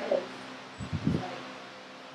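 Electric fans running with a steady hum and hiss, with a few brief low sounds about a second in.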